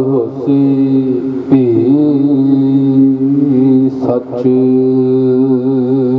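A man chanting into a microphone in long, held notes, breaking off briefly twice: Sikh devotional recitation.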